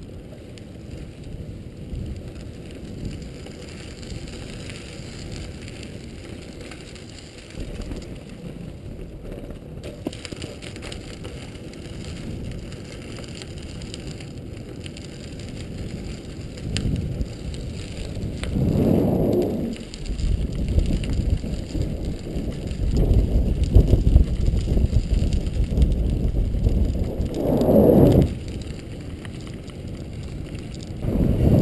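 Road bicycle riding on a paved path, heard from a handlebar-mounted camera: steady tyre and frame rattle and rumble. It grows louder in the second half, with two stronger swells near the end.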